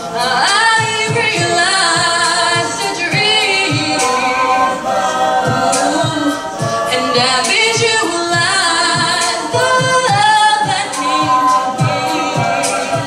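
A cappella group singing: a female lead voice with held and gliding notes over sustained backing harmonies from a mixed choir of men and women, with a steady low vocal-percussion beat about twice a second underneath.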